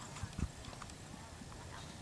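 Pony's hooves cantering on soft sand arena footing, with two dull low thumps in the first half second.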